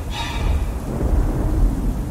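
Storm sound effect: low thunder rumbling continuously with a rain hiss over it, and a brief brighter flash of sound right at the start.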